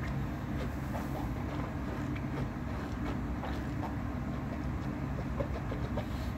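Steady low mechanical hum and rumble, with a few faint light clicks.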